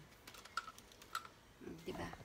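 Faint plastic clicks and taps from a ring light on its tripod stand being handled: a few sharp clicks, the two loudest about half a second apart, with lighter ticks between. A brief murmured voice near the end.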